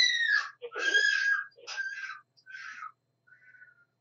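A high-pitched voice screaming in several short bursts over the first three seconds, then a fainter, shorter call near the end.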